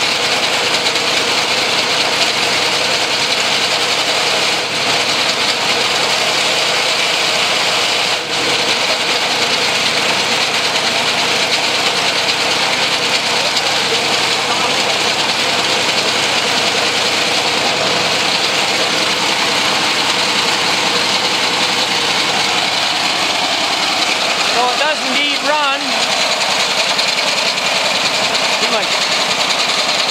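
Three small air-cooled single-cylinder engines coupled into a homemade three-cylinder unit, running together at a steady speed on a test run. They make a loud, continuous clatter.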